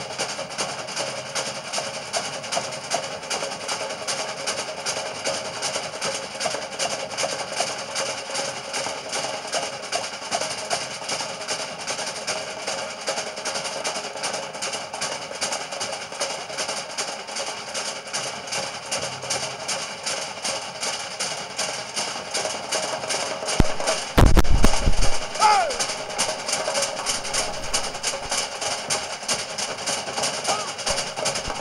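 Fast, steady drumming for a Samoan fire knife dance, with a woody knocking beat. About three quarters of the way in, a loud low rumble lasts about a second.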